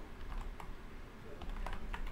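Typing on a computer keyboard: a handful of light, scattered keystrokes.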